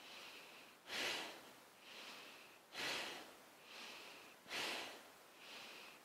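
A woman's pumping breath in a yoga kriya. Three strong rushing breaths come about 1.8 seconds apart, with softer breaths between them, each breath paced to moving between a squat and a forward fold.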